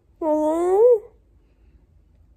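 A woman's voice, loopy and slurred after wisdom-teeth removal, whining a drawn-out "Why not?" as one long call under a second long that starts a moment in, rises and falls off at the end.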